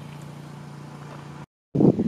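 Outdoor ambience with a steady low hum. About a second and a half in, the sound cuts out completely for a moment at an edit. It comes back as louder, gusty wind buffeting the microphone.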